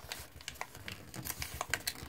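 A sheet of origami paper being folded and creased by hand: a quick string of faint crinkles and clicks, thickest in the second half.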